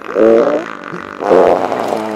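A long, drawn-out fart with a wavering pitch, swelling loudest about a quarter second and again about a second and a half in.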